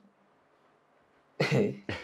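A silent pause, then about one and a half seconds in a sudden short burst of a man's laughter.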